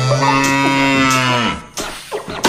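A cow mooing: one long, low moo that holds steady, then drops in pitch and stops about a second and a half in.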